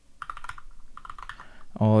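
Rapid keystrokes on a computer keyboard as a word is typed: a quick run of key clicks lasting about a second and a half.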